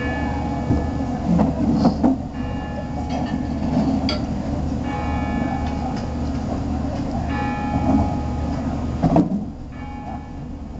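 Distant train horn sounding about four long blasts of roughly two seconds each over a steady low rumble.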